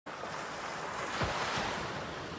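Steady rushing, wind-like noise that swells twice just after the one-second mark: an ambient whoosh sound effect.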